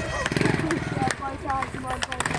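Montesa trials motorcycle's single-cylinder four-stroke engine revving in a short burst for the first half-second or so, then dropping away as the bike goes over the boulder, with spectators talking over it.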